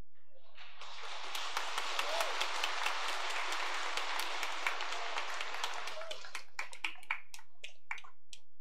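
Congregation applauding: the clapping starts about half a second in, stays dense for several seconds, then thins to a few scattered claps near the end.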